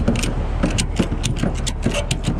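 Ratchet on a cargo tie-down strap clicking in quick strokes, about five clicks a second, as a strap that had worked loose on the load is pulled tight. A steady low rumble runs underneath.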